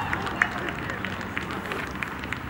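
Football players' voices calling across an open pitch, with scattered short clicks and knocks, a sharper one about half a second in, over steady open-air background noise.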